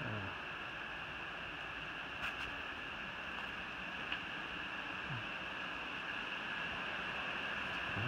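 Steady rushing of a mountain stream, an even wash of water noise with a couple of faint ticks.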